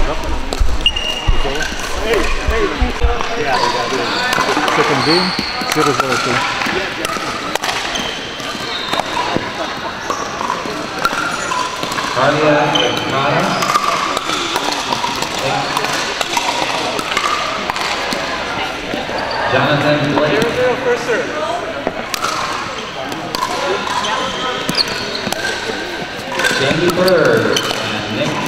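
Reverberant indoor sports-hall din: many voices talking indistinctly, with scattered sharp pops of pickleball paddles striking plastic balls on the surrounding courts.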